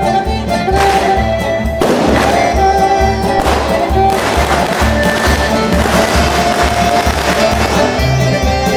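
Live folk band music: fiddle and trumpet carry the tune over drum kit, accordion and acoustic guitar, with a steady beat of about two pulses a second.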